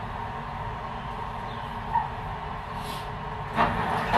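Steady low background rumble, then near the end a short, louder scrape and knock as an aluminium sliding window frame is gripped and handled.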